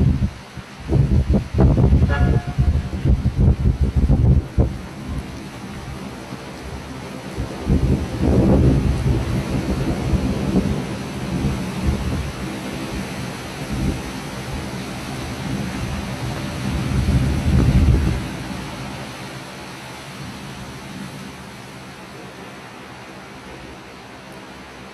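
Torrential rain hissing steadily, overlaid with loud low rumbles and gusts through the first few seconds and again about 8 and 17 seconds in, then settling to a quieter, even rain noise near the end.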